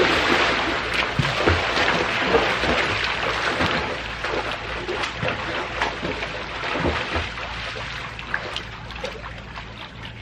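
Splashing of two people swimming a race the length of a pool, loudest as they push off and kick away, then fading as they swim toward the far end.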